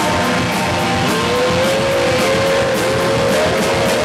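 Live rock band playing loudly: electric guitar with drums and steady cymbal strokes. From about a second in, a guitar line of bending, arching notes rises above the band.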